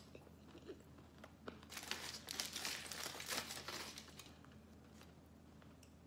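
Aluminium foil crinkling and rustling as it is peeled off a burrito, a dense burst of about two and a half seconds in the middle, with a few small clicks before it.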